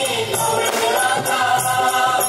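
Live stage song: voices singing together over a band with drums and percussion.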